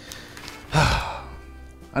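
A man lets out a heavy sigh about a second in, a breathy exhale lasting about half a second, over quiet background music.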